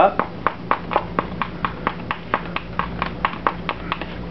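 Spatula strokes slapping and smearing alginate impression paste against the side of a mixing bowl in quick, regular strokes, about four or five a second. This is hand spatulation: the paste is worked into one spot against the bowl wall to get a smooth, thorough mix.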